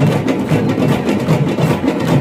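A troupe of parai frame drums, beaten with sticks, playing a fast steady ensemble rhythm.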